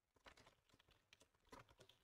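Faint typing on a computer keyboard: two quick runs of keystrokes.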